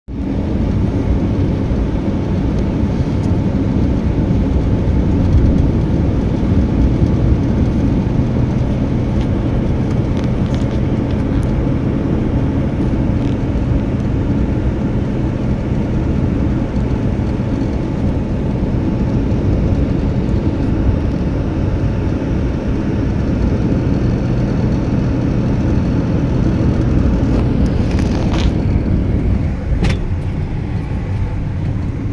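Steady low road and engine noise of a car driving, heard from inside the cabin.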